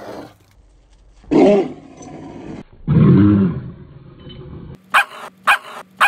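A Rottweiler giving two loud, deep growling barks through a chain-link fence at a Vizsla puppy that has come too close, then two short sharp barks near the end.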